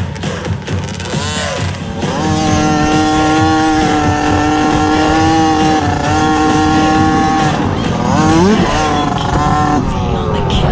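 Small kids' dirt bike engine held at high revs on a straight, running steady for several seconds. About eight seconds in it drops and then climbs again.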